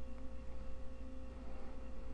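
Steady low electrical hum with a faint steady tone, the background noise of a desk microphone, with a faint mouse click near the start.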